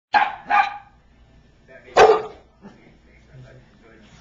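Dog barking in play: two quick barks right at the start, then a third, louder bark about two seconds in.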